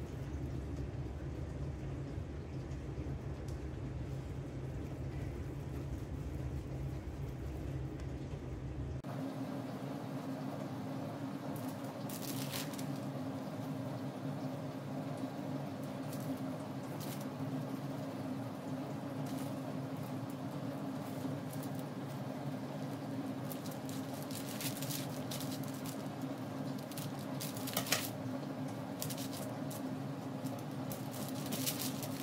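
A steady low background hum that changes pitch abruptly about nine seconds in, under soft scattered clicks and rustles of hands working bread dough on parchment paper.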